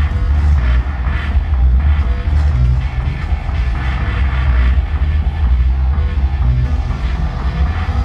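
Live electronic music played from a laptop and Native Instruments controller, loud and continuous with a deep, steady bass.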